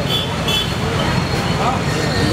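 Street traffic noise, a steady low rumble, with voices talking faintly in the background.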